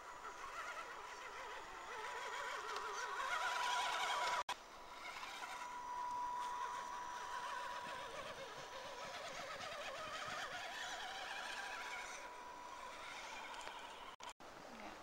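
Axial SCX10 Deadbolt RC crawler's electric motor and gearing whining as it climbs a dirt bank, the pitch wavering up and down with the throttle. The sound cuts out briefly about four and a half seconds in.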